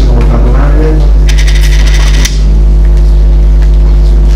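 Loud, steady electrical mains hum with a buzzy stack of overtones, running through the sound system. About a second in, a short crackling rustle lasts just under a second.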